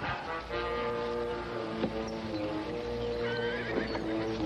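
A horse whinnies, a wavering call near the end, over background music with long held notes.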